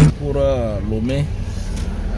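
A man speaking briefly inside a moving car, over the steady low rumble of the car's engine and road noise in the cabin.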